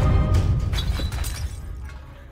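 Trailer score: a heavy low boom hit at the start that slowly dies away, with several sharp crackling strikes over it in the first second.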